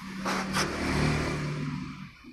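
A motor vehicle engine running close by, a low hum whose pitch drops and then rises again, with two brief scratchy sounds in the first half second.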